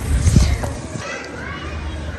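Distant children's voices outdoors, faint and scattered, over a low rumble of wind on the microphone.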